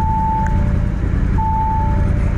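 Audi RS Q8's twin-turbo V8 running, not sounding very good: it is missing on some cylinders, in an engine the dealer says is blown. A dashboard warning chime beeps twice over it, once at the start and again near the end.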